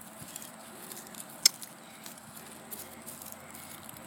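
Wind rumbling on the microphone, with one sharp click about a second and a half in.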